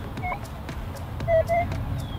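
Minelab E-Trac metal detector giving short mid-pitched target beeps as its coil is swept over a buried target that reads in the high 30s: a faint blip near the start, then two beeps about a second and a half in. A low rumble of wind or handling runs underneath.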